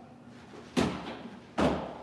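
Snowboard training board landing twice, two thumps a little under a second apart, as the rider hops 180s onto and off a low rail box.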